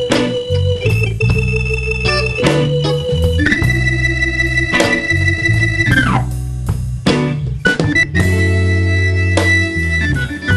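Electric organ solo in a live blues band, with long held high notes over the band's bass line.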